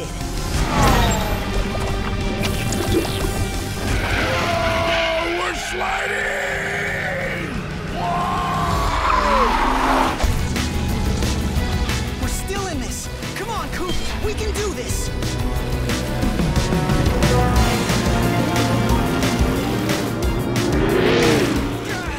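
Cartoon race soundtrack: background music over race-car engine and crash sound effects, with pitch-sliding whoosh effects about four to ten seconds in and a few short voice sounds from the characters.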